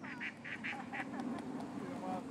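A duck quacking, a quick run of about five calls in the first second, over a steady low hum.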